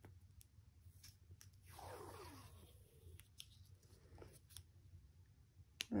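Faint crinkling and scattered light clicks of a small plastic wrapper being picked at and peeled off by fingers, with a sharper click near the end.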